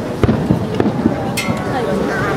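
Aerial fireworks shells bursting, a few sharp cracks, under the steady chatter of a crowd of onlookers.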